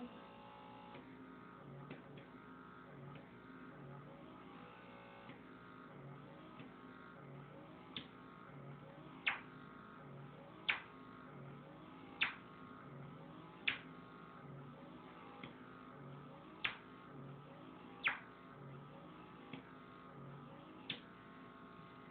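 Handheld derma suction pore vacuum working over the skin of the chin, its nozzle coming off the skin with a sharp pop about every second and a half from about eight seconds in. Faint music with a regular beat runs underneath.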